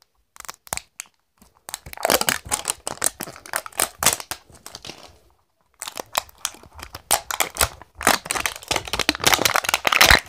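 Wrapper layer of an L.O.L. Surprise ball being peeled and crumpled by hand: dense crinkling and tearing in two spells, with a short pause about halfway.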